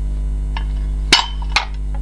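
Two sharp metallic clacks about half a second apart, the first the louder, from the hinged plates of a non-stick stovetop waffle iron being handled and knocked shut, over a steady low electrical hum.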